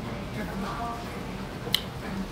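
Quiet room tone with a faint low hum and one sharp, brief click near the end.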